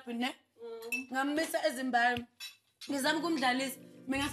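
Cutlery clinking against plates, with a few sharp clinks, under a woman's speech. A low musical drone comes in during the last second.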